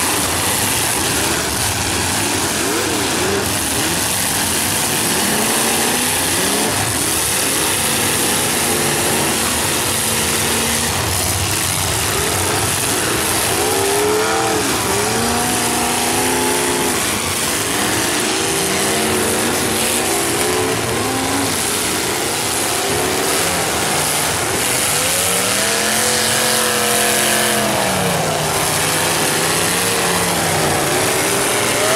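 Demolition derby cars' engines revving hard, several at once, their pitch rising and falling over and over as the cars drive, reverse and ram each other.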